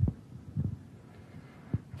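Handling noise from a handheld microphone: three dull low thumps as it shifts in the hands, the first and loudest at the start, another about half a second in and one near the end, over a faint hum.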